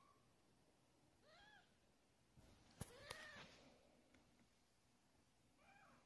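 Week-old ragdoll kittens mewing faintly: three short, high, arching mews spaced about two seconds apart. Two sharp clicks come just before the middle mew.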